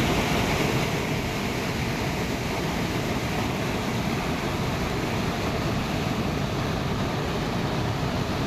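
Flash-flood river water rushing over rocks: a steady, loud rush of turbulent muddy water.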